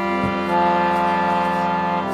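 Piano accordion (a Bugari) holding one sustained chord for about two seconds, the reeds sounding steadily as the bellows move, before the melody moves on.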